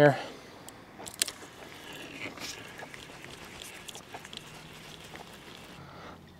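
Soft clicks and rustling of a fishing rod and reel being handled, with a sharper click about a second in.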